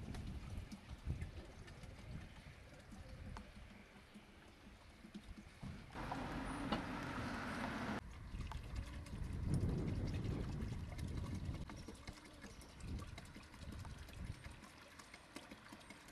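Disinfectant liquid being poured from a plastic jerrycan into the plastic tank of a backpack sprayer, with small knocks of the plastic containers being handled. About six seconds in, a stretch of louder hiss starts and then cuts off suddenly about two seconds later.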